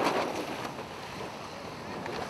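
Steady rush of wind on the microphone and water along a small sailboat's hull, dropping somewhat in loudness during the first second.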